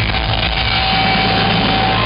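Punk rock band playing live at full volume through a venue PA, a dense, noisy wall of electric guitars and drums with one note held steady through the second half. It is recorded from inside the crowd on a small camera microphone.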